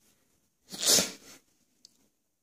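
One short, loud burst of breath noise from a person, about three-quarters of a second in and lasting well under a second.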